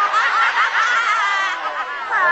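A person's high-pitched snickering laugh, wavering quickly up and down in pitch.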